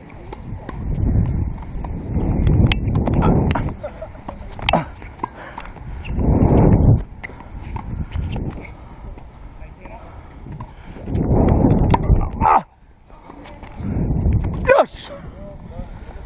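Tennis rally heard from a player-worn camera: now and then a sharp strike of ball on racket or court, amid repeated loud rumbling bursts of wind buffeting and movement on the microphone. Short shouts come near the end.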